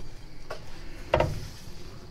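Aluminium laminating-mould plate being handled against the machine's metal tray: a light click about half a second in, then a louder single knock with a brief ring just over a second in.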